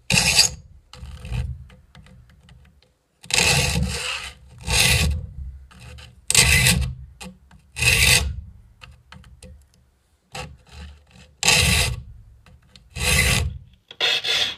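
Hand file rasping across the steel teeth of a 10-points-per-inch hand saw as it is sharpened: about nine separate push strokes, each about half a second long, every second or two, with a longer pause in the middle.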